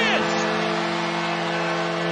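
Arena goal horn sounding a steady multi-note chord over crowd noise, signalling a home-team goal.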